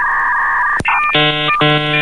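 Dial-up modem handshake: a steady two-tone whistle, a click under a second in, then a chord of many tones switching on and off in quick blocks.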